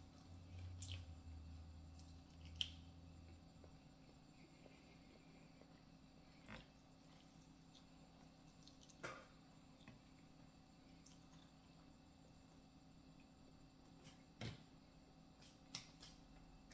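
Near silence with the faint sounds of a person eating a piece of fried chicken by hand: a few scattered soft clicks and smacks, the sharpest about two and a half seconds in. A low hum fades out about three and a half seconds in.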